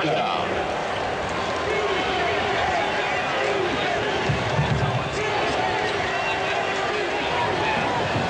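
Stadium crowd noise: a steady din of many voices in the stands.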